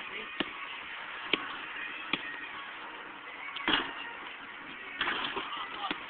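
A basketball bouncing: three sharp bounces a little under a second apart in the first half, then two longer scuffing rustles in the second half.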